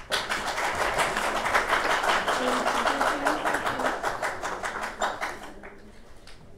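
Audience applauding: a dense run of clapping that starts abruptly and dies away about five and a half seconds in.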